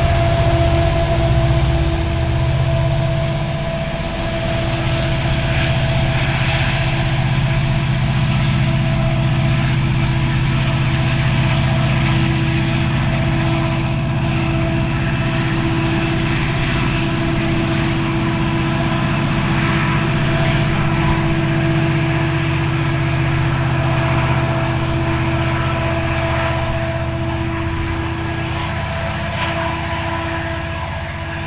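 Union Pacific diesel-electric locomotives pulling a freight train: a steady deep engine drone with a high, sustained whine over it. The sound holds at the same strength throughout, dipping only briefly about four seconds in.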